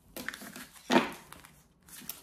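Tarot cards being swept together and slid across a hard tabletop, a run of short scrapes and clicks with one sharper knock about a second in.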